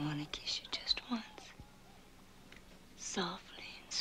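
A woman speaking in a soft, breathy whisper: two short phrases with a pause of about a second and a half between them.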